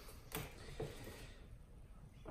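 Faint clinks from a chain knocker's steel chain links as it is moved along a drain-cleaning flexshaft cable to set its spacing: two light clicks in the first second, then quiet handling.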